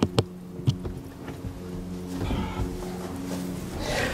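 Background music: a soft, steady held chord, with a couple of sharp clicks in the first second.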